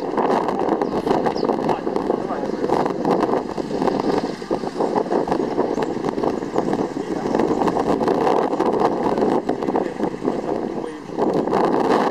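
Indistinct chatter of a small group of people talking over one another, with no pauses, over steady outdoor background noise.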